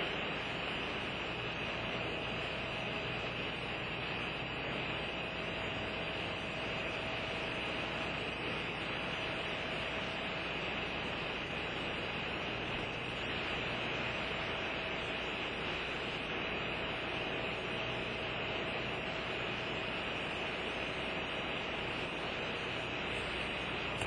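Steady background hiss with a low hum; no distinct sounds stand out.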